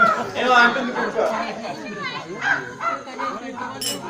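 Performers' voices in lively spoken Telugu dialogue, with a short sharp click near the end.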